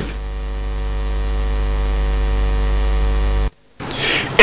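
Loud, steady electrical mains hum: a low buzz with a ladder of overtones that cuts off suddenly about three and a half seconds in.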